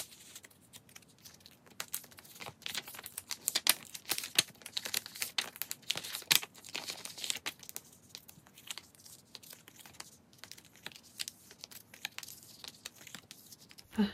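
Photocards being slid into the clear plastic pocket pages of a ring binder: the plastic sleeves crinkle and rustle in a string of small, irregular clicks and scrapes, busiest in the first half.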